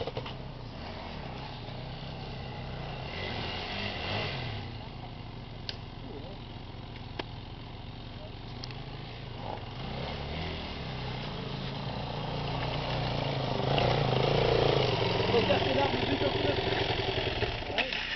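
Enduro dirt-bike engines running on a forest track, a steady engine note that grows louder over the last few seconds as riders approach.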